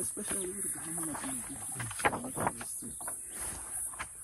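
Fainter voices of people talking a few metres off, softer than close speech at the microphone.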